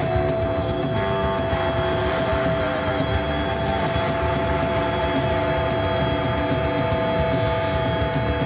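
A live heavy rock band playing: drum kit pounding fast with distorted electric guitars, and a long sustained guitar note held steady over the drumming.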